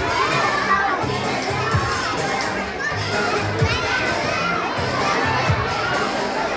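A crowd of young children shouting and cheering over a pop dance track that plays for a children's dance. The track has a steady repeating bassline with a low thump about every two seconds.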